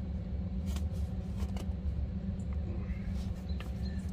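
Faint rustling and a few light clicks from a stuffed nylon sack being handled and set down, over a steady low rumble.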